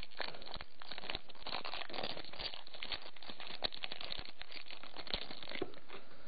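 Foil Pokémon booster pack wrapper crinkling and tearing as it is opened by hand: a dense, continuous run of crackles with a few sharper snaps.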